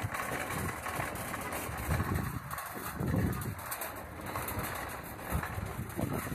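Plastic shopping cart rolling over parking-lot asphalt as it is pushed, a steady noisy rattle with a few low swells.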